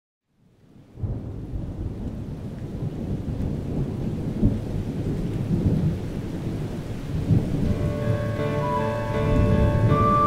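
Thunderstorm: heavy rain with low rumbling thunder, fading in within the first second, then held music chords coming in over it near the end.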